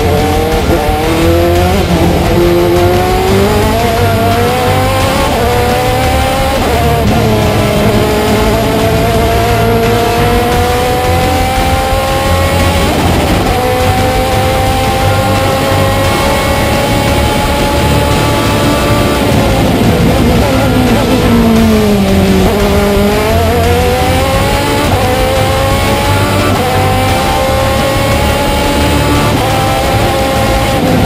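Osella FA30 hillclimb sports-prototype's Zytek racing engine under hard acceleration: the pitch climbs and drops back at each upshift, several times in the first dozen seconds, then falls away as the car downshifts and slows about twenty seconds in, before climbing through the gears again.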